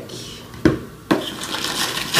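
Packing paper rustling and a cardboard box being handled as hands rummage inside it, with one sharp tap just over half a second in and steady rustling from about a second in.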